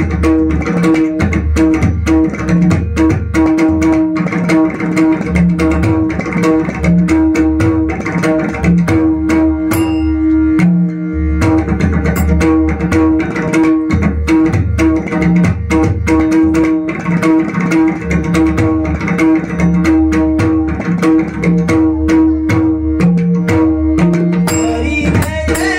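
Pakhawaj, a barrel-shaped double-headed drum, played fast with both hands: deep open bass strokes on the left head interleaved with sharp, ringing strokes on the tuned right head. There is a short break in the bass about ten seconds in.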